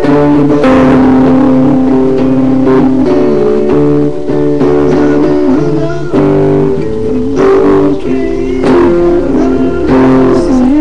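Electric guitar playing sustained lead notes with several pitch bends, over steady low bass notes, in a slow rock tune.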